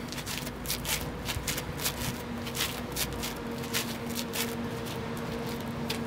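Trainers scuffing and tapping on an exercise mat in quick, irregular strikes during fast alternate mountain climbers, thinning out after about four seconds. A steady low hum runs underneath.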